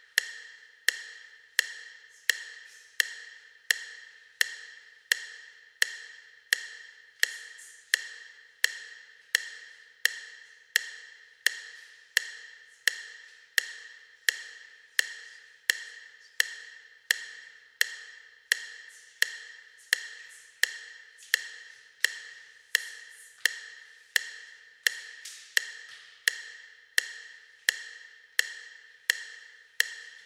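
Metronome clicking steadily at 85 beats per minute, each click sharp with a brief decay.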